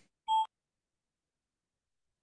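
A single short electronic beep from language-learning software, about a quarter second in, cueing the learner to speak.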